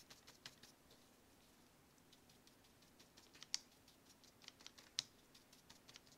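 Faint, irregular taps of a filbert brush stippling paint onto a small sheet of paper, with two sharper taps at about three and a half and five seconds in.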